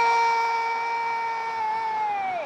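Football commentator's goal call: one long, loud, held shout on a single high note with no words.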